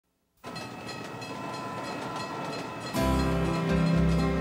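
A train passing a level crossing, a steady rumble with faint steady tones over it. About three seconds in, music with held bass notes starts over the train.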